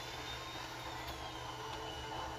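Steady low background hum with a faint, thin high whine that drifts slightly in pitch.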